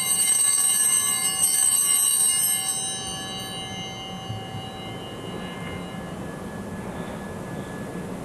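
Altar bells rung at the elevation of the consecrated chalice: a cluster of small bells shaken for about the first three seconds, then ringing out and fading away by about the middle.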